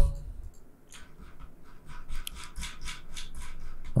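A run of quiet clicks and rubbing from a computer mouse and keyboard being worked at a desk, starting about a second in.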